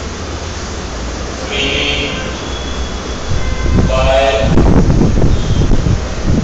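Whiteboard marker squeaking in short strokes as words are written, with a low rumble and knocking from the board and the clip-on microphone that grows louder from about halfway through.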